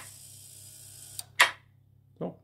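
A faint steady hiss, then a small click and a louder sharp click about a second and a half in, while the door's relays are being switched from the phone app.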